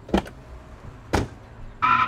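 Car door sound effect: two sharp thuds about a second apart as the door is opened and shut, followed near the end by a brief pitched tone.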